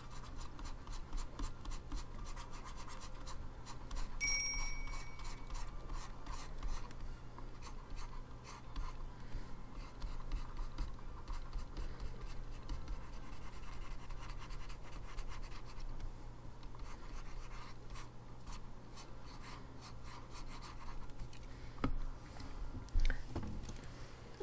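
Stylus scratching across a graphics tablet in many quick short strokes while painting hair, over a steady low hum.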